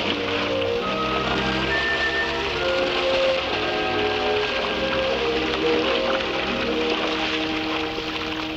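Background music score of held notes moving from pitch to pitch, over a steady hiss of water splashing from swimmers kicking at the surface.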